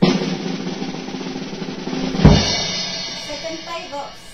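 Drum roll sound effect building suspense for a raffle draw. It starts abruptly, closes a little over two seconds in with one loud final hit, and then rings away.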